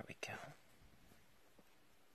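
A single spoken word at the start, then near silence: quiet room tone with a few faint ticks.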